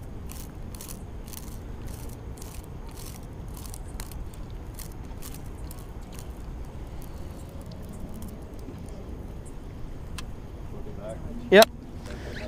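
Small sharp clicks, a few a second and thinning out after a few seconds, from a levelwind baitcaster reel (Okuma Classic XT) as tangled line is pulled off the spool to clear a backlash, over a low steady rumble.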